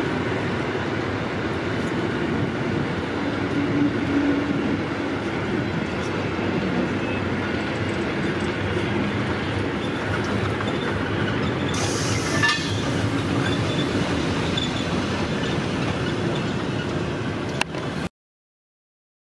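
Train of vintage railway carriages and a goods van rolling past on the rails, a steady rumble of wheels on track with some clicking. There is a brief high hiss about twelve seconds in.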